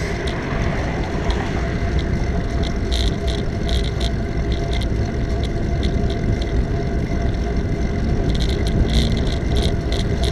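Wind buffeting the microphone and tyre rumble of a bicycle riding on a paved bike path, a steady noise with a deep low rumble. Light rattling clicks come and go, thickest near the end.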